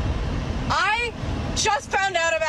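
Car cabin road noise, a steady low rumble, under a young woman's voice. Her voice rises high about a second in, then she starts talking.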